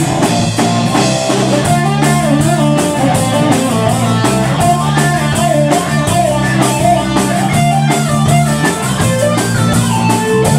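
Live rock band playing an instrumental passage: an electric guitar plays a melodic lead line over bass guitar and a steady drum-kit beat.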